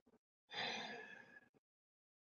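A woman's sigh: one breathy exhale lasting about a second, fading away.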